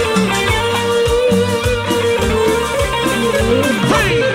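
A live cumbia band playing an instrumental passage: keyboard and string melody lines over bass and percussion on a steady dance beat. A quick rising glide sounds near the end.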